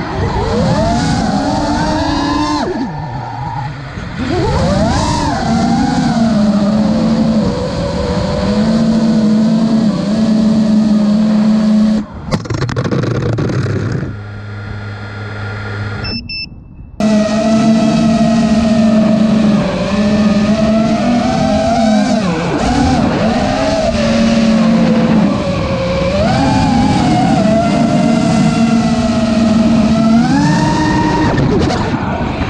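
FPV quadcopter's motors and propellers whining, the pitch rising and falling with throttle. About twelve seconds in the whine drops to a lower, quieter hum, then nearly cuts out with a short high beep around sixteen seconds while the quad sits on the ground. About a second later the motors spin back up and the whine resumes.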